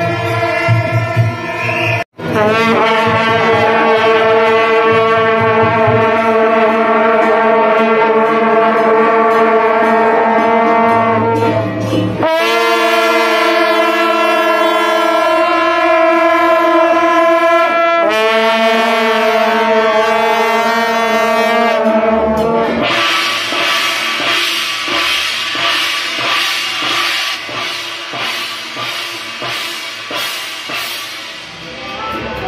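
A troupe of shaojiao, the long straight brass horns of a Taiwanese temple procession, blowing long held notes together in three blasts of about ten, six and five seconds, several pitches sounding at once. Then the horns stop and a dense hissing noise takes over, slowly fading.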